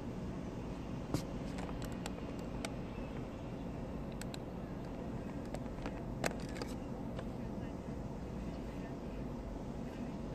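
Steady low hum of a car cabin as the car rolls slowly, broken by a few sharp clicks, the loudest about a second in and just after six seconds.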